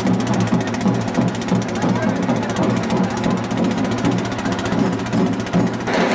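A crowd of voices talking over music, with a steady low hum underneath.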